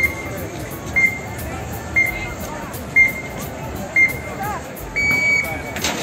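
Electronic start-countdown timer at a cycling time-trial start ramp, beeping once a second: five short beeps, then a longer beep as the start signal.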